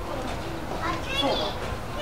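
Voices of people talking in the background, high-pitched children's voices among them, loudest about a second in, over a steady low rumble.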